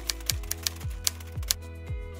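Typewriter key-click sound effect: a quick run of sharp clicks, a few per second, that stops about one and a half seconds in. Underneath is background music with a soft, steady low beat.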